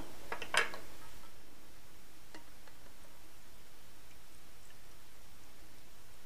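Quiet room tone with a few faint clicks and taps, clustered in the first second and once more a little past two seconds in, as a wine thief is dipped into a glass carboy to draw a wine sample.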